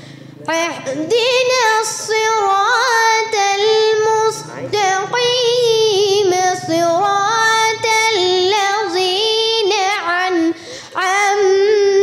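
A young girl's voice chanting Quran recitation in the melodic style, with long ornamented phrases that waver around one held pitch. There are short breath breaks about four and a half seconds in and again near the end.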